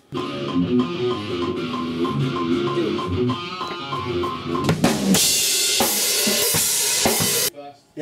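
Drum kit played over backing music and a fast, evenly spaced metronome click. About five seconds in, a loud cymbal wash takes over, then everything cuts off suddenly; the take is called too fast.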